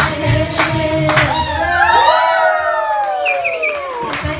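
Hindi film song sung karaoke-style over a backing track. The beat stops about halfway, leaving a long held sung note that rises and then falls away near the end.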